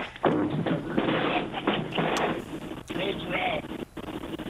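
Mostly speech: indistinct voices over a broadcast audio feed, with a laugh near the end.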